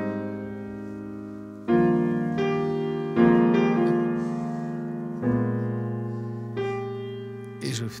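Acoustic grand piano playing a slow sequence of jazz chords, about six struck in turn and each left to ring and fade, with the pedal holding them. A man's voice begins to speak near the end.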